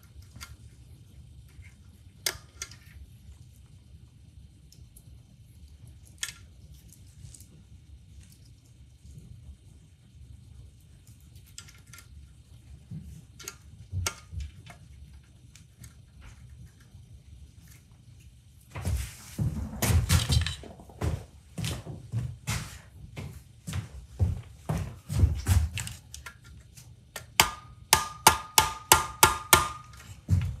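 Scattered light clicks of small parts on a KitchenAid mixer's motor end, then about two-thirds in a run of knocks. It ends in a quick series of about a dozen even taps, some five a second, with a slight ring. This is a plastic tube held against the motor's speed governor being tapped to seat the governor on the shaft.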